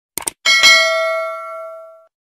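A notification-bell sound effect: a quick double mouse click, then one bright bell chime that rings and fades away over about a second and a half.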